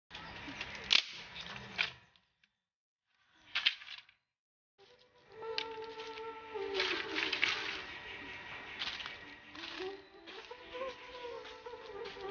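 Dry bamboo sticks rustling and knocking together as a bundle is handled and dropped onto ground strewn with dry leaves, with sharp clacks about a second in and near two seconds. From about five seconds in, a wavering buzzing drone runs behind the clatter.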